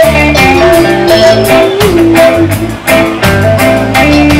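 Live rock band playing loudly: a sustained melody line that bends in pitch, over bass and a steady drum beat.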